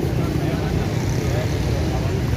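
Indistinct voices of people nearby over a steady low rumble.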